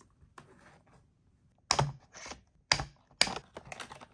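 Plastic toy bubble microphone being pulled out of its cardboard display box: faint rustling, then a few sharp clicks and knocks of plastic against cardboard about a second apart, with a quick run of smaller clicks near the end.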